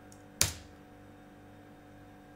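A single computer keyboard keystroke about half a second in: the Enter key pressed to run a typed command. A faint steady hum runs underneath.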